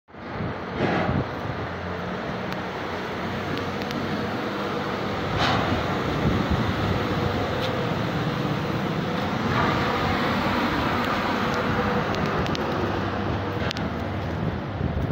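Street traffic noise: vehicle engines running and road noise in a steady wash, with a few brief clicks.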